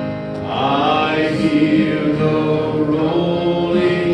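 A worship song: a man sings long, held notes into a microphone over strummed acoustic guitar and a second guitar, his voice coming in about half a second in.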